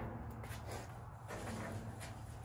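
Lit charcoal poured from a chimney starter into the side firebox of an offset charcoal smoker: a faint, uneven rattle and scrape of coals sliding out of the chimney and dropping in.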